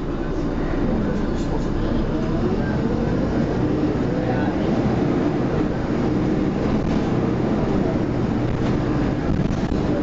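MAN 12.240 bus's diesel engine and ZF automatic gearbox heard from inside the passenger saloon as the bus drives along, a steady low drone with the engine note rising as it accelerates a few seconds in.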